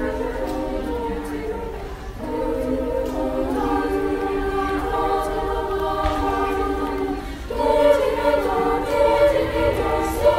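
Middle school choir singing together as a group, with a short break about two seconds in and louder from about seven and a half seconds in.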